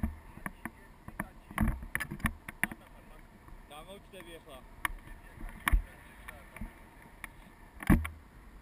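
Wind buffeting an action camera's microphone in paragliding flight, with irregular clicks and knocks from the camera mount and harness. The loudest knock comes near the end.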